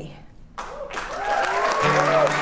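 Audience applause and cheering swell up about half a second in as the sung line ends. Acoustic guitars play on under the applause, carrying the song's instrumental break near the end.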